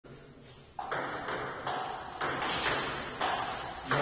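A table tennis ball going back and forth in a rally: sharp clicks of paddle hits and table bounces about twice a second, starting about a second in, each with a short echo.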